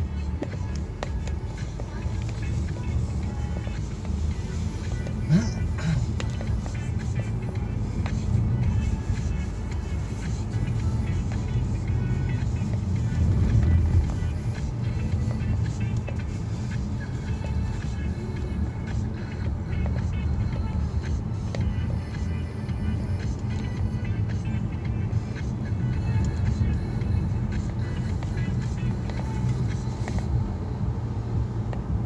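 Steady low road and engine rumble inside a moving car's cabin, with music playing over it.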